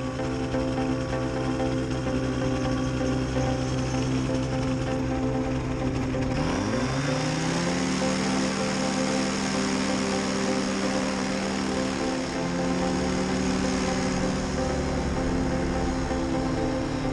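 Tandem paramotor trike's engine and propeller running, then throttled up about six seconds in, its pitch rising and then holding steady as the trike starts rolling for takeoff. Music plays over it.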